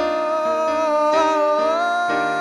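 Male voice holding a long, high, wordless sung note that steps up in pitch near the end, over piano chords struck about every half second.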